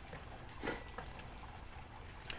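Faint handling of a spatula and tongs on a grill mat: a soft scrape about two-thirds of a second in and a light click near the one-second mark, over a low hiss.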